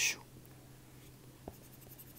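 A short, scratchy pen stroke on a writing surface right at the start, then quiet with a faint tick about one and a half seconds in.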